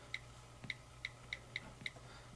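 iPod touch on-screen keyboard key clicks as a word is typed: six faint, short ticks at uneven intervals.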